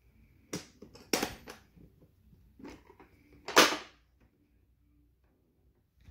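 Hard plastic clicks and knocks as a black plastic storage box's latches are snapped open and its lid is lifted off, about four separate knocks with the loudest a little past halfway.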